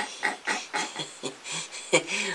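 A young man's stifled laughter: short bursts of breathy, half-voiced laughing, about four a second.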